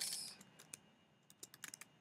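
Computer keyboard keys clicking softly as a few keystrokes are typed, a handful of separate clicks mostly in the second half.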